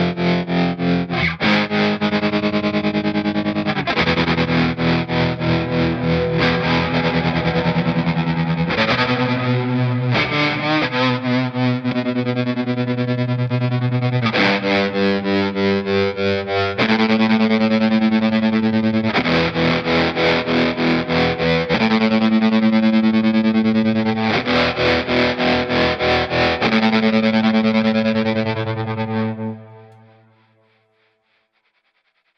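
Overdriven electric guitar chords played through a TC Electronic Pipeline tap tremolo, the volume pulsing in rhythm. The pulse speed shifts between passages as the pedal's sequencer steps through different subdivisions. The guitar stops just before the end.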